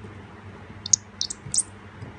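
Small screwdriver tip squeaking and scraping in the stripped head of an iPhone 4's bottom screw, a quick cluster of about four short high squeaks about a second in, as the worn screw refuses to turn out.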